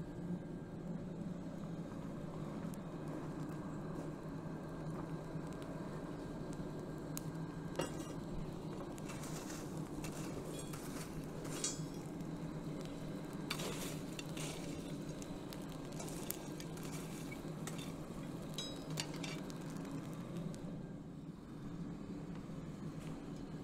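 Coal forge fire burning with its air supply running as a steady hum. Scattered clinks and crackles come mostly from about eight seconds in, as a cast iron anvil coated in case hardening compound heats among the coals.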